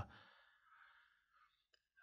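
Near silence in a pause between a man's sentences, with a faint breath just after the start and a tiny click near the end.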